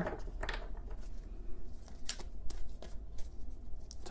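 Tarot deck being shuffled to draw another card: scattered card flicks and rustles, with a low steady hum underneath.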